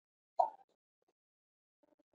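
Near silence, broken once, a little under half a second in, by a short faint sound.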